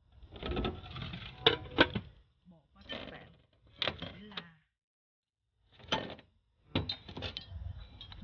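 Ceramic bowls and a kitchen knife being handled and set down on a table and cutting board: a few sharp clinks and knocks, with rustling handling noise between them.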